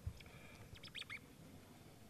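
Quiet room tone with a soft thump at the start and a few faint, short squeaks and clicks about a second in.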